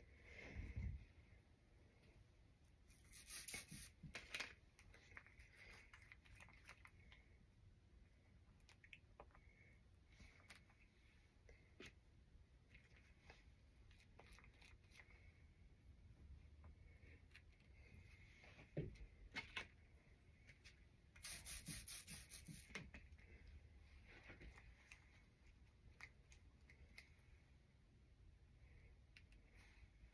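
Near silence with faint handling noises: soft clicks and rustling, a short scratchy rubbing burst a few seconds in, and a quick run of rubbing strokes about two-thirds of the way through.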